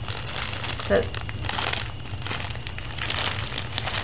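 Clear plastic sleeves around bundles of faux cotton stems crinkling as they are handled, in short crackly spells.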